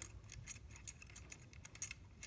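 Faint, quick clicks and light rattles of the plastic wiring-loom clips and connectors on the transmission's solenoids as a gloved hand works them loose.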